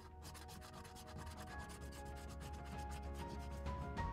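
A scratch-off lottery ticket being scratched in quick, repeated strokes, most likely with a coin, under sustained background music that grows louder.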